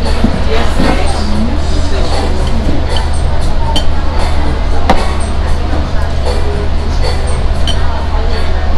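Restaurant din: a steady low hum with background voices and music, and several short sharp clinks of a metal fork and knife against a plate.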